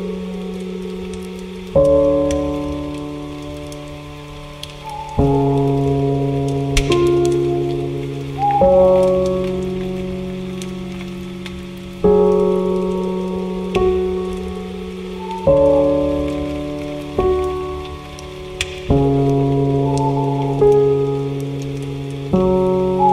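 Soft, slow piano chords, each struck and left to ring and fade, a new chord every two to three seconds, over a steady rain-like hiss. A few short falling bird calls sound between the chords.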